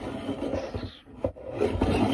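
Clear hard plastic box protector around a boxed vinyl figure being handled, scraping and rubbing, with a brief break about a second in.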